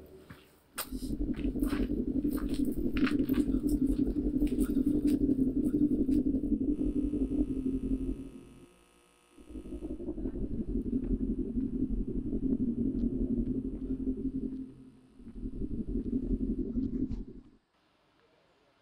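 A low, steady rumbling drone in three long stretches, each cutting off abruptly, with a gap of about a second between the first two and a shorter one before the last.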